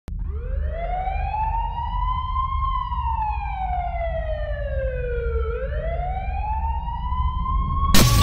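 A siren-like wail over a steady low rumble: one pitched tone glides up for about two and a half seconds, sinks slowly for about three, then climbs again. It is cut off by a sudden burst of noise at the very end.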